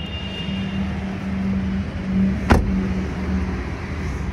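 Steady low hum of a vehicle engine running, with a single sharp thud about two and a half seconds in as a car door is shut.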